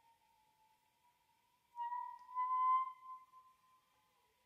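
A single high held woodwind note from a flute and bass clarinet duo. It is faint at first, swells about two seconds in with a slight upward bend in pitch, then fades away.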